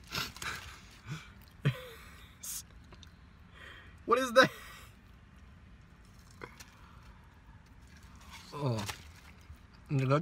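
Mostly quiet, with a few faint clicks and rustles in the first couple of seconds, a short voiced sound about four seconds in, and another brief one near the end.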